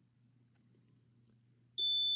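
Faint low hum, then about 1.75 s in a continuity tester's buzzer starts a steady high-pitched beep as the probe touches the laptop's main power rail. The beep signals a short to ground: the rail reads close to zero ohms.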